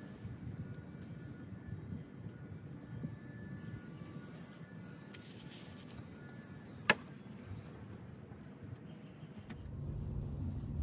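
Quiet handling of a twisted plastic grocery-bag bowstring, the loose plastic rustling briefly about five seconds in, with one sharp click near seven seconds, over a steady low background rumble.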